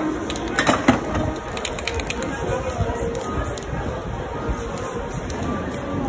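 Short hisses of aerosol spray paint from a can, with a sharp clack just under a second in, over background music and crowd chatter.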